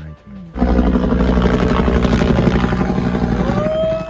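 Helicopter flying overhead, its rotor chop starting abruptly about half a second in and running loud and steady, with a rising shouted voice near the end.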